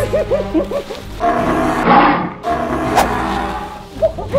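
An animal roar sound effect, loudest around the middle, after a wavering warble in the first second, over background music with a steady held note; a sharp click comes near the end.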